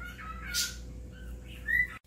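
Pet bird chirping and whistling: a string of short calls, a louder, harsher call about half a second in, and a rising chirp near the end.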